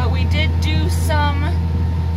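Tractor engine running steadily while pulling an anhydrous ammonia applicator bar, heard from inside the cab: a deep, even drone with faint steady higher tones over it.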